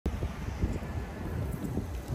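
Wind buffeting the microphone in an uneven low rumble, with a large SUV rolling slowly past.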